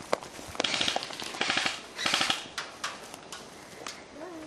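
Airsoft guns firing: three short full-auto bursts of rapid clicking shots, the first under a second in and the others at about one and a half and two seconds, with scattered single shots around them.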